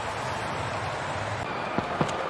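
Steady hubbub of a large stadium crowd, with two short sharp clicks near the end.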